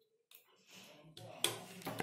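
Faint handling of jumper wires on a robot chassis, with one sharp click about one and a half seconds in as a jumper connector goes onto a pin.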